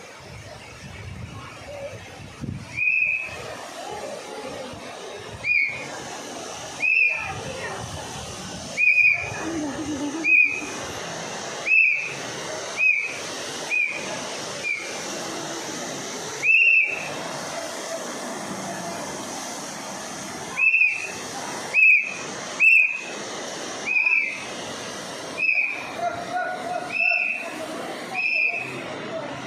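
About twenty short, high whistle notes, each rising and falling, repeated every second or so, over a steady hiss of rushing river water and a high-pressure water jet spraying across it.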